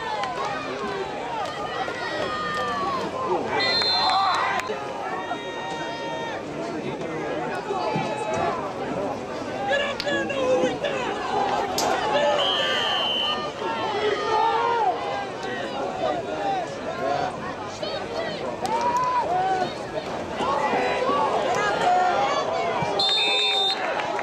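Spectators chatting and calling out over one another in the stands of a football game. Short, steady, high whistle blasts come about four seconds in, again near the middle, and once more near the end.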